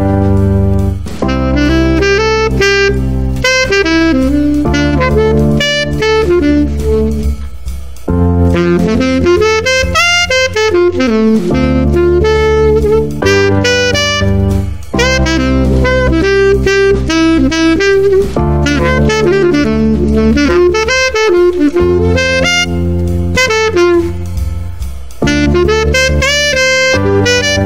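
Saxophone improvising quick up-and-down runs through the chord triads over a backing track of sustained chords that alternate every couple of seconds between D minor and G, a II–V in C major.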